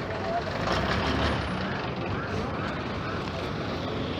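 Busy street traffic, with a bus engine running close by and a low rumble under the noise, and the voices of passers-by in the background.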